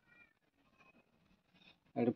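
Faint, short high-pitched animal calls, heard once near the start and again about a second in, against an otherwise quiet background.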